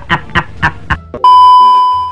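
A man's laughter in short rhythmic pulses, about four a second, then a loud, steady, high test-tone beep of the kind that goes with TV colour bars cuts in about a second later and holds.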